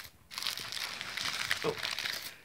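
Cellophane crinkling as a candy bouquet wrapped in pink cellophane is handled close to the microphone: a dense, crackly rustle that starts about a third of a second in.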